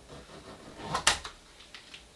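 Front zipper of a latex catsuit pulled up to the collar: a short rasp about a second in that ends sharply.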